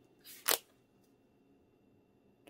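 A page of a six-inch patterned paper pad being flipped over: one short papery swish about half a second in.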